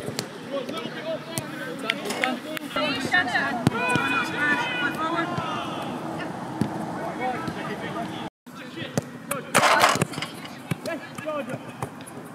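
Footballs being kicked, a scattering of sharp thuds, under players' and coaches' shouts and calls. The sound drops out for a moment about two-thirds of the way through, and a short loud rush of noise follows about a second later.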